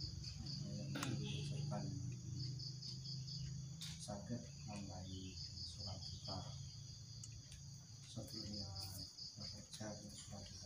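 Crickets chirping: a steady high trill with a short run of about five pulses repeating every two to three seconds, over a low steady hum.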